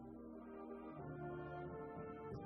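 A military concert band playing held chords, with clarinets and brass sounding together; a low bass note comes in about halfway through.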